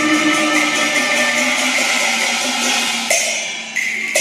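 Cantonese opera accompaniment ensemble playing an instrumental passage with held melodic lines and no voice, with sharp percussion strikes about three seconds in and again just before the end.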